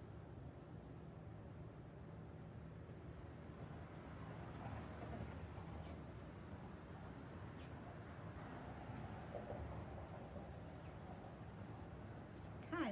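A bird chirping faintly, a short high note repeated about once a second, over a low steady background hum.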